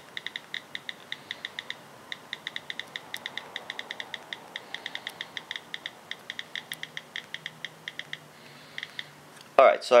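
Rapid run of key-click sounds from an iPhone's stock iOS 7 on-screen keyboard under fast two-thumb typing, about five or six clicks a second; the run stops about eight seconds in, with two last clicks near nine seconds.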